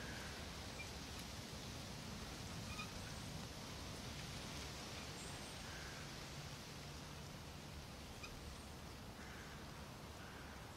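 Soft, steady rustle of wind through tree leaves, with a few faint, short chirps scattered through it.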